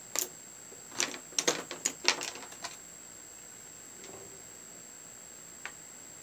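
Small hard clicks and clacks of makeup palettes and brushes being handled and picked through, a quick irregular run of them in the first three seconds and one more near the end.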